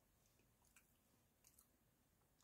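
Very faint chewing of nacho cheese sandwich crackers, with a few soft crunching clicks.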